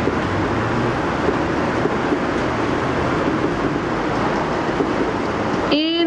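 Steady classroom room noise, a loud even hiss, with faint indistinct voices under it; a clear voice starts near the end.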